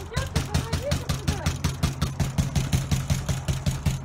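Rapid, even banging and rattling of a locked metal-framed glass entrance door being shaken and pounded by hand, about eight knocks a second, with a low thud from the door panel; it starts and stops abruptly.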